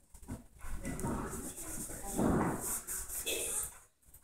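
Indistinct, quiet voices from the classroom, broken by brief pauses, with no clear words.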